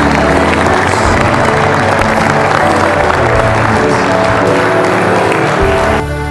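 Music with long held notes, with a congregation of wedding guests clapping over it, until the clapping stops near the end.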